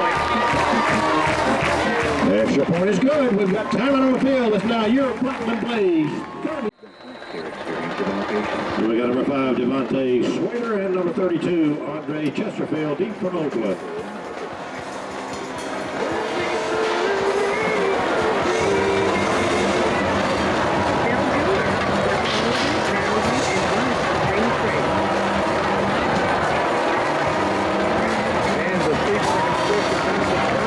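Music with voices over it. The sound cuts out sharply for a moment about seven seconds in, and the second half is steadier music with held notes.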